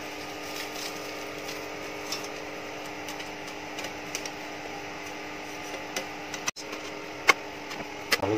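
Sparse light clicks and taps of a steel fan blade and screwdriver being handled, over a steady hum. One sharper click comes near the end.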